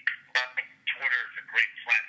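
Speech only: a man talking over a telephone line, his voice thin and narrow-sounding. It starts abruptly right at the beginning, after dead silence.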